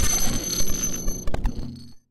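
Digital glitch sound effect: harsh static with steady high electronic ringing tones and a few sharp clicks a little past the middle, cutting off suddenly at the end.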